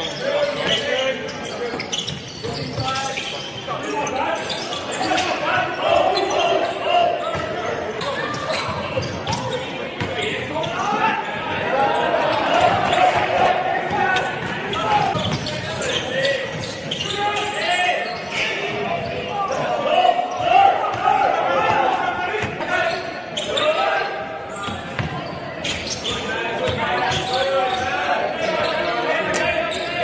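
Live sound of an indoor basketball game: a basketball bouncing on a wooden court, with the voices of people around the court throughout.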